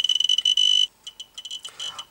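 Radiascan dosimeter's alarm beeper sounding a high, nearly continuous tone because the reading of about 1.3 mR/h is in its danger range. The tone stops a little under a second in, followed by a few short beeps at the same pitch.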